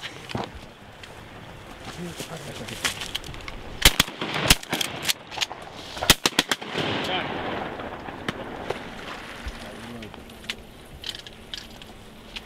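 A quick volley of shotgun shots from several waterfowl hunters firing together, about half a dozen sharp reports packed into a few seconds near the middle.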